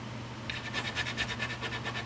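A small hand-held blade scraping at the wooden body of an electric guitar around a routed hole, in quick, even strokes, several a second, starting about half a second in.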